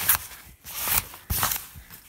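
A zipper on a canvas tent window being pulled closed in about three quick strokes, with the fabric rustling between them.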